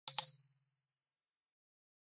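A bright bell-ding sound effect for the subscribe button's notification-bell animation: two quick strikes close together that ring out as one clear high tone and fade away within about a second.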